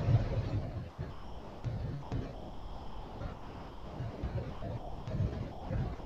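Faint room noise with soft low rumbling bumps and a few light clicks.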